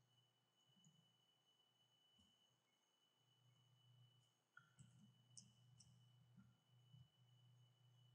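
Near silence: a steady faint low hum, with a few faint clicks about halfway through.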